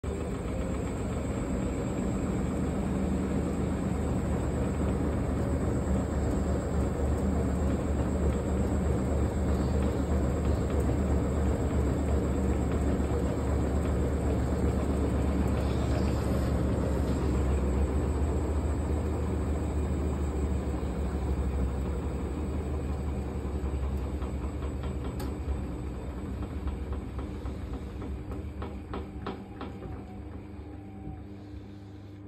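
Hotpoint WD860 washer-dryer spinning its drum, the motor and drum giving a steady low rumble that runs down over the last few seconds, with faint regular clicks near the end. The load is over-sudsed from too much non-bio powder, foam nearly overflowing, the condition that triggers the machine's sudslock.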